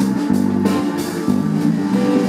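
Live blues-rock band playing an instrumental passage with no singing: electric guitar and bass guitar over a drum kit, with regular drum and cymbal hits.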